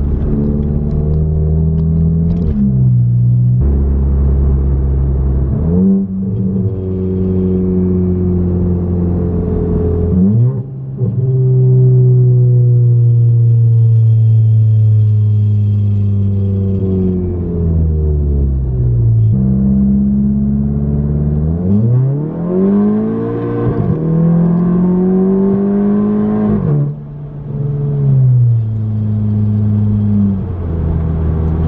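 Big-turbo Volkswagen GTI's turbocharged four-cylinder engine heard from inside the cabin as the car pulls through the gears. The engine pitch climbs and drops sharply several times at the upshifts, with a longer steady stretch in the middle where it slowly falls away.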